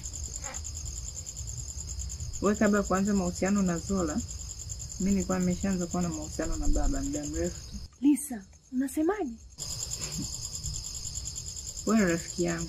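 Crickets chirping steadily in a continuous high-pitched drone, with bursts of speech over it. The chirping drops out for about two seconds about eight seconds in, then returns.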